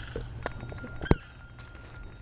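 A mobile phone starting to ring: a faint, steady electronic tone that begins about half a second in, with one sharp click about a second in.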